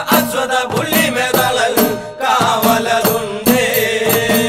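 A Malayalam folk song (nadanpattu) playing: a chant-like vocal line over a regular beat of percussion.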